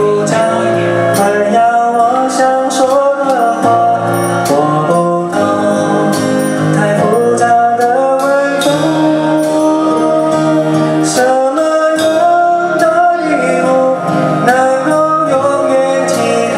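Live band music: keyboard chords under a lead melody that glides and wavers in pitch, with regular cymbal-like ticks.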